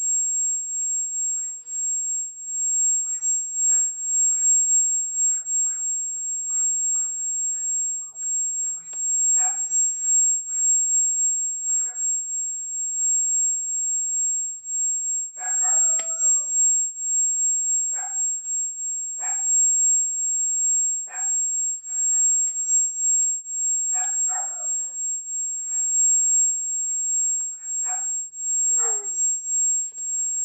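A steady high-pitched electronic whine runs throughout and is the loudest sound. Over it come short, sharp voice-like calls at irregular intervals every second or two, and a faint short high beep every six or seven seconds.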